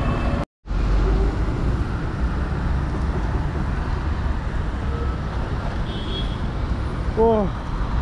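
A steady low rumble of wind buffeting the microphone, mixed with road traffic noise, broken once by a split-second dropout near the start. A voice is heard briefly near the end.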